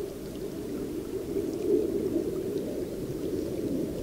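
Shallow seasonal stream flowing over matted grass, a steady, low, even rush of moving water.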